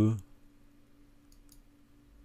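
Two faint computer-mouse clicks close together, about a second and a half in, as an element is picked on screen, over a faint steady hum.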